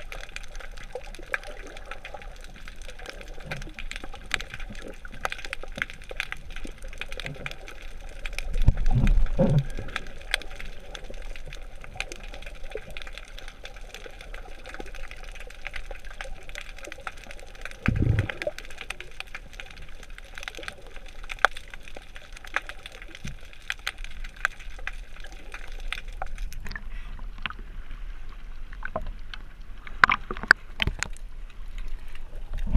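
Underwater sound picked up through a waterproof action-camera housing: a constant crackle of fine clicks, with two louder muffled low whooshes about nine and eighteen seconds in. Near the end the crackle drops away as the camera comes up to the surface.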